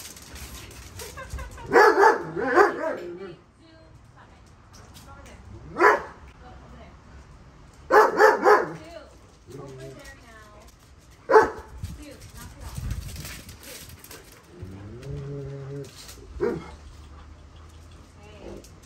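Dobermans barking in bursts while they play-fight: a run of several quick barks about two seconds in, another run about eight seconds in, and single barks between and near the end.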